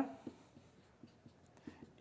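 Dry-erase marker writing on a whiteboard: a few faint, short strokes.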